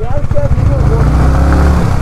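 Motorcycle engine running and getting louder about a second in as the bike moves off over a gravel track.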